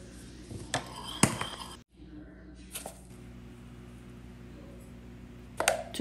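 A few light clicks and clinks of stainless-steel measuring spoons against a ceramic bowl, the sharpest about a second in and another pair near the end, over a low steady room hum.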